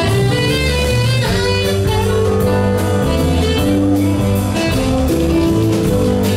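Live blues-rock band playing an instrumental passage: electric guitar over a moving bass line and a steady drum beat, loud and continuous.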